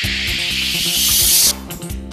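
News bulletin intro sting: a hissing whoosh effect over music, growing louder and cutting off suddenly about a second and a half in, after which the music carries on with a beat.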